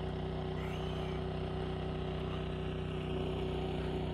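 A steady low hum from an engine running at an unchanging speed, one constant pitch throughout.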